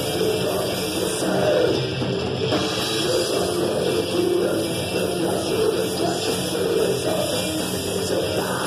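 A live rock band playing loud and steady: electric guitar over a drum kit, heard from among the audience.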